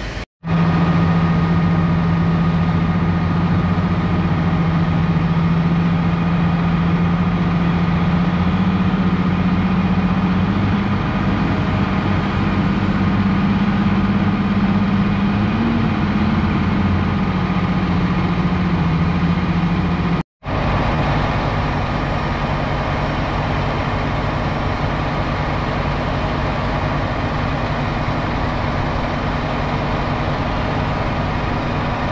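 Heavy diesel engine running steadily close by, a constant drone whose pitch rises a little partway through. The sound cuts out for an instant just after the start and again about two-thirds of the way in.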